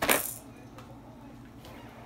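A single short, sharp clink at the very start.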